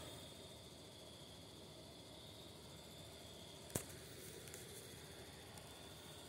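Near silence: faint room hiss with a thin steady high tone, and one faint click a little past the middle.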